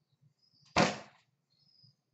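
A single loud thump about three-quarters of a second in, dying away within about half a second, with a few faint clicks around it.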